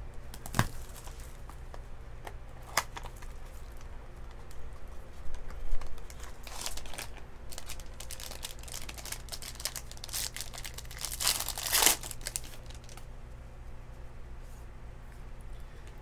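Foil trading-card pack wrapper being torn open and crinkled by hand, in several short bursts of tearing and crumpling.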